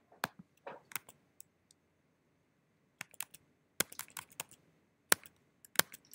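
Computer keyboard keys and mouse clicks tapped in short, irregular clusters.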